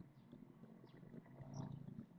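Near silence: faint room noise, with a slight low swell about one and a half seconds in.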